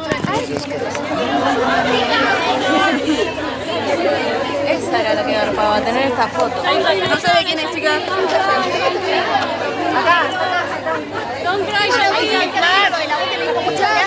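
Several people talking at once close by, their voices overlapping into steady chatter.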